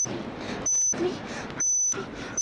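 A 6,000 cycles-per-second test tone from a stereo test record, sounding as two short beeps about a second apart. It is a frequency-response test tone. A voice murmurs faintly between the beeps.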